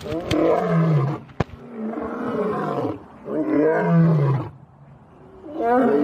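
A lion roaring: three long, deep roars of about a second each, each sliding down in pitch as it ends.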